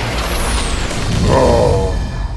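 Cartoon battle sound effects: a rushing energy blast with a high whistle falling in pitch over a steady low rumble. About a second and a half in comes a short pitched, wavering sound.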